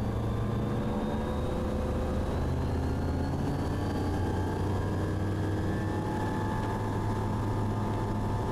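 Sling light aircraft's propeller engine running at full takeoff power during the takeoff roll, a steady drone whose pitch creeps slightly upward over the first few seconds as the aircraft accelerates down the runway.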